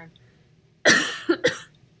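A woman coughs: one loud cough about a second in, followed quickly by two shorter ones.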